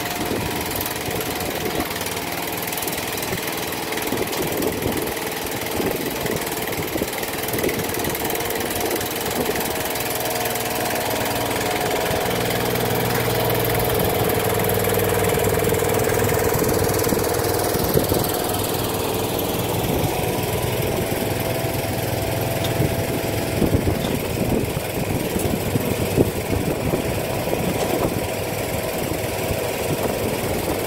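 John Deere garden tractor engine running as the tractor drives past, growing louder toward the middle and easing off after. A few sharp clanks in the second half.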